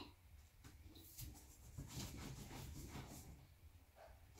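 Faint scratching and light ticks of drawing by hand, barely above room tone.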